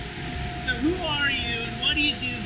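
Canning-line machinery running with a steady hum and mechanical noise under indistinct voices.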